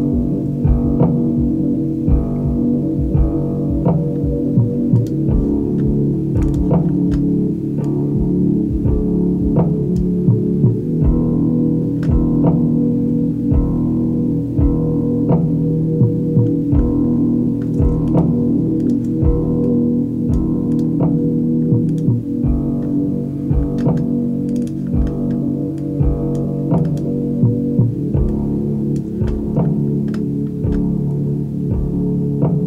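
Multitrack guitar, bass and drum music recorded at half speed through a C1 Library of Congress cassette player, playing back slow, low and gritty in mono. The sound is dark, with little above the midrange, and regular drum hits run through it.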